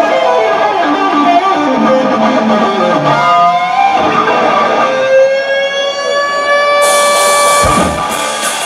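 Live electric guitar solo: quick descending runs, a note bent upward about three seconds in, then a long sustained note sliding slowly upward from about five seconds. A cymbal crash and drums come in near the end.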